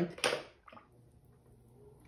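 Mostly quiet: a short, sharp sound just after the start, then the faint steady hum of an electric potter's wheel running.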